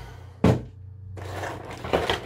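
A single knock of the cardboard window box about half a second in, then the crackle and rustle of the clear plastic blister tray being handled and drawn out of the box.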